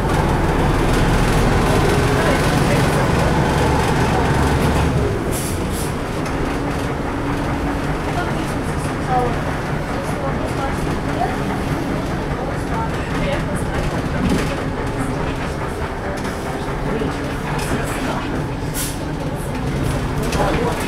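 Inside a vintage LAZ 695T on the move: the running and rattling of the vehicle's cabin, with a heavier low rumble for the first five seconds that then eases to a lighter, steady drone.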